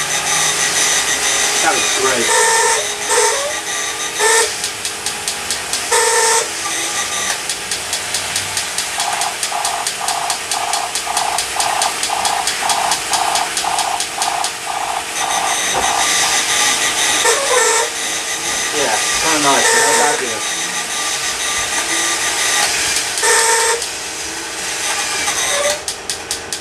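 Battery-operated tin toy robots running together: a rapid mechanical clatter, electronic beeps that pulse about twice a second through the middle of the stretch, and wavering siren-like tones a little later.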